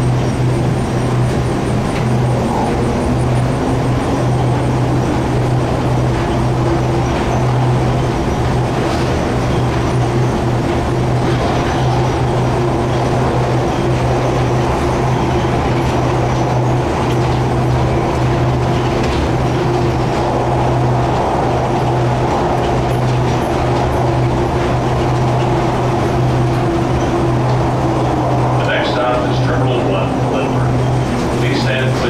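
Airport underground shuttle tram running through its tunnel, heard from inside the car: a steady low hum with a whine that rises in pitch over the first few seconds as it gets up to speed, holds steady, and drops away near the end as the tram slows for the station.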